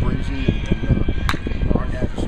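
A man speaking, over a steady low rumble, with one short sharp crack a little past halfway.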